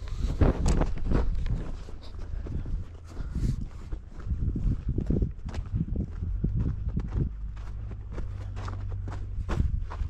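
Footsteps walking across a dirt and gravel yard, irregular crunching steps, over a steady low rumble.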